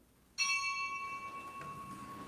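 A small, high-pitched bell struck once about half a second in, ringing out and slowly fading. Rung in the church just before Mass begins, it is the signal that the celebrant is entering.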